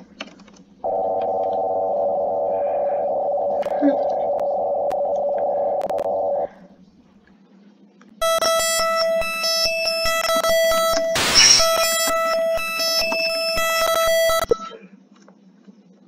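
Two emergency alert alarm tones played back from a computer, one after the other. The first is a steady buzzing tone for about six seconds; after a short pause, the second is a higher, harsher tone with many overtones and rapid regular clicking for about six seconds, with a brief hiss partway through.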